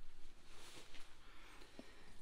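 Faint rustling of straw nesting material as a hand gathers eggs inside a plastic nest box, with a couple of light ticks.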